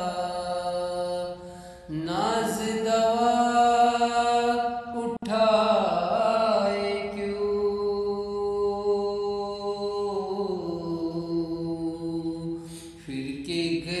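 A man singing an unaccompanied devotional song in Urdu, drawing out long held notes with short breaths about two and five seconds in. His voice is altered by a voice-changer app.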